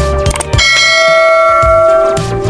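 Notification-bell sound effect: a bright bell chime rings out about half a second in and holds steadily for well over a second, after a brief stretch of beat-driven background music.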